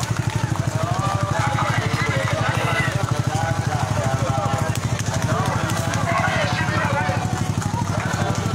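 An engine idles steadily close by, a low, even, fast-pulsing drone, while several people's voices call out over it.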